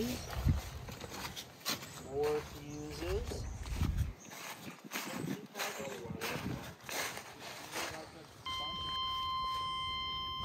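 A 1994 Chevy 3500 pickup's dashboard warning chime starts beeping about eight and a half seconds in, a steady high tone: the sign that the battery is connected and the truck's electrics have power again. Before it, brief voices and handling noises.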